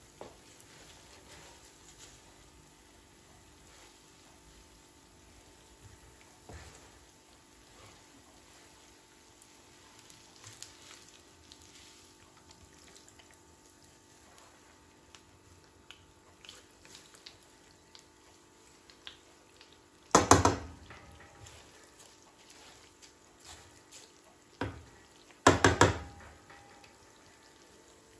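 Kataifi pastry frying in shallow oil in a nonstick pan: a faint, steady sizzle and crackle with scattered small clicks. Two short, loud clattering noises come about twenty and twenty-five seconds in, as the fried round is handled with tongs and turned over in the pan.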